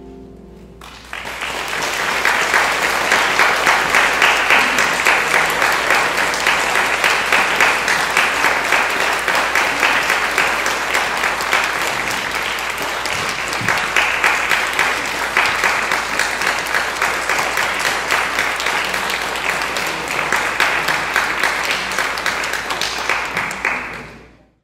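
A cello's final note dies away, then many people break into applause about a second in. The clapping carries on steadily and drops away at the very end.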